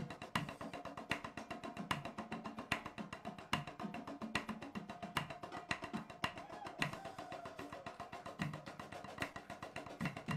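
Marching drumline with tenor drums (quads) playing a fast warm-up groove, with dense rapid stick strokes and a loud accent about every 0.8 seconds.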